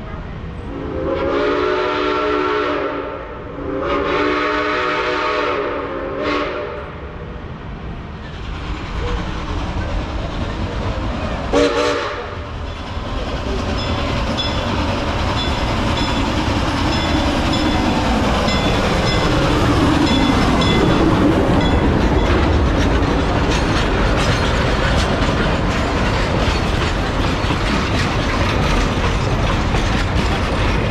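Narrow-gauge steam locomotive's chime whistle blowing two long blasts and a short one, then the train rolling up and passing, getting steadily louder, with its wheels clacking over the rail joints.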